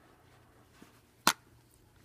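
A single sharp click a little over a second in: a finger striking the black plastic arrow of a BeanBoozled spinner card. Otherwise quiet room tone.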